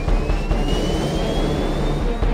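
F-16 fighter jets passing in formation, their engine whine rising steadily in pitch over a low rumble.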